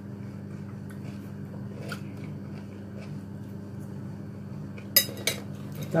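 Metal forks clinking on a plate of food: a few faint taps, then two sharp clinks about five seconds in, over a steady low hum.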